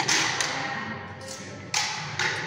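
Rapier sparring: sharp knocks and clashes of blades and feet on a hard floor, one burst just after the start, a smaller one shortly after, and a loud sudden hit near the end.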